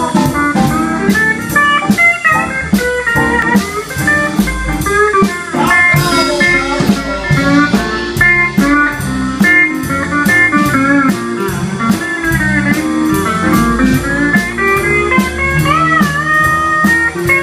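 Live western swing band playing an instrumental passage: pedal steel guitar gliding and bending notes over keyboard, electric guitar, upright bass and drums keeping a steady beat.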